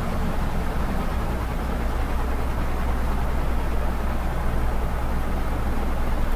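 Steady low hum with an even hiss above it, unchanging throughout: the recording's background noise, with no distinct events.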